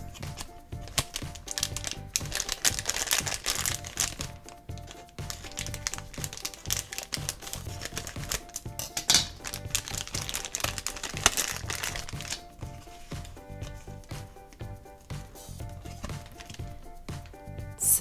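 Shiny plastic blind-bag packet crinkling as it is handled and opened, loudest over the first twelve seconds or so. Background music plays throughout.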